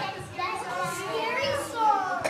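Young children's voices chattering and calling out over one another, with a high voice gliding down near the end.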